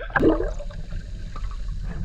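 Sea water gurgling and sloshing around a camera at the water's surface, over a steady low rumble.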